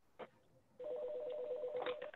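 A telephone line tone: a steady two-note tone comes on about a second in and holds for just over a second, heard through the phone line with its hiss, after a single faint click.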